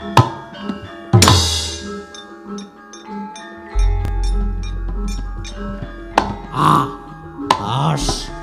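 Gamelan music playing: metallophones ringing steadily under several loud, sharp crashing strikes, about a second in and again near the end. A deep low boom swells in about four seconds in and carries on.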